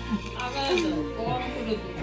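People's voices and background music, over a steady low hum.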